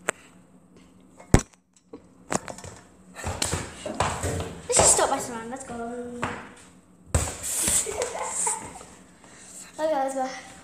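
A sharp knock about a second and a half in, with a couple of lighter knocks around it. From about three seconds on, children's voices talk and call out in bursts.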